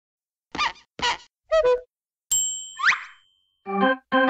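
Cartoon sound effects: three short pitched blips, then a bright ding with a quick rising whistle. A children's tune of plucked keyboard notes begins near the end.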